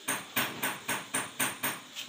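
A rapid run of about eight sharp knocks, evenly spaced at roughly four a second, like hammer blows.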